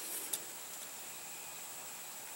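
Quiet outdoor background with a faint steady high-pitched hum and one small click about a third of a second in.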